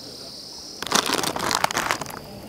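Steady high-pitched insect buzz, then from about a second in a dense crackling and crinkling noise that runs on to the end.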